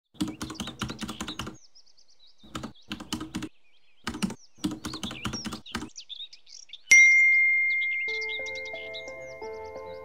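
Three bursts of rapid keyboard typing clicks with birds chirping faintly in the background, then about seven seconds in a single bright text-message notification ding that rings out and slowly fades. About a second after the ding, a soft melodic music intro begins.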